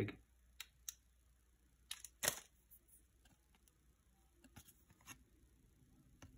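A few faint clicks and light handling sounds from a baseball card and its waxed paper wrapper being handled, with one sharper click a little past two seconds in.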